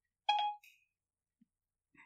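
A single short beep-like tone about a quarter second in, lasting about a third of a second; otherwise silence.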